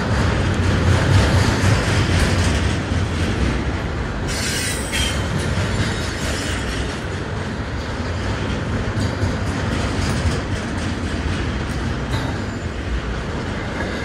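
Double-stack intermodal freight train well cars rolling past close by, a steady rumble of steel wheels on rail. A brief high screech of wheel squeal comes about four and a half seconds in, and a few wheel clicks over rail joints follow.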